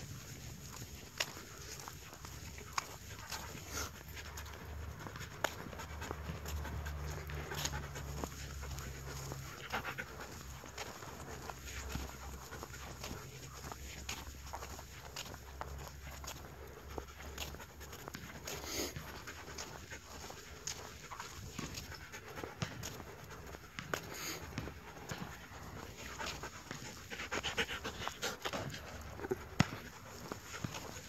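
Siberian husky panting as it walks, with scattered sharp taps throughout and a low rumble in the first half.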